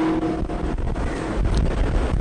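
A man's held voice fades out at the start, then a low, uneven rumble like wind buffeting the microphone fills the pause.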